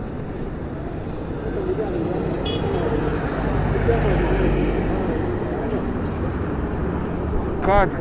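Street traffic noise: a steady low rumble of vehicles that swells as one passes around the middle, with the faint chatter of people on the street. A man's voice starts to speak near the end.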